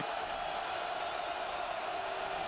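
Steady stadium crowd noise, the din of many voices carried on a television broadcast's sound.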